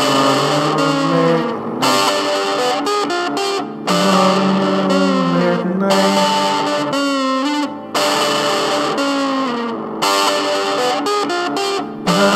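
Music led by a distorted, effects-laden electric guitar, played in phrases that break off briefly every two to four seconds.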